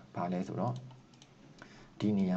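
A man speaks briefly, then a few faint clicks as the computer is worked: keys or a mouse while switching windows and selecting text.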